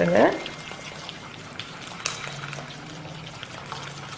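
Silicone spatula stirring a raw egg into creamed butter and sugar in a glass bowl: soft, wet squishing and light irregular scraping.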